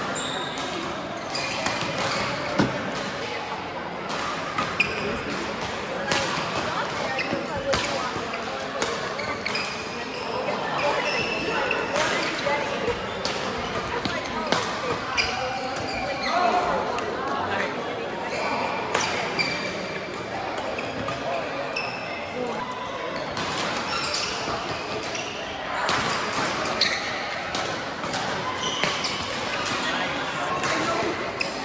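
Badminton rallies: many sharp, irregular racket hits on the shuttlecock and footwork on the court floor, over a steady murmur of voices in a large, echoing sports hall.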